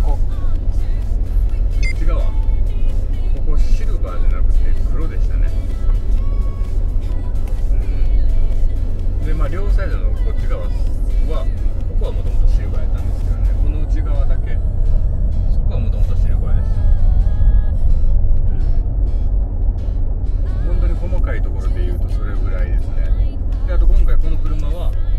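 Steady low road and drivetrain rumble inside the cabin of a Mercedes-Benz G400d cruising at highway speed, about 80 km/h, under background music with a singing voice.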